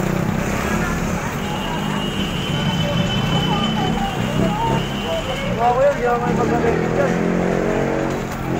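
Street traffic noise with a vehicle engine running close by, a steady low hum, and voices speaking over it, most clearly in the second half.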